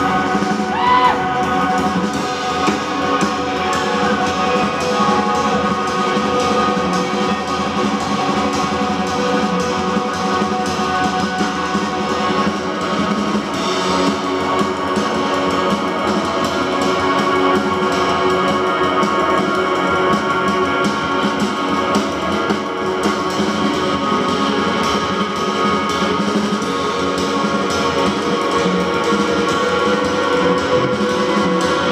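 Live band playing an instrumental passage, with no singing: electric guitars over upright bass and a drum kit, steady and full throughout.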